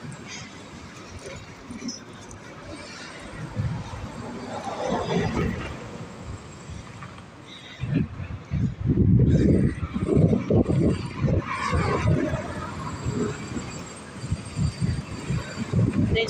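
Street sounds heard while walking along a city street with a phone, with traffic passing. From about halfway in, loud irregular low rumbling hits the microphone for several seconds.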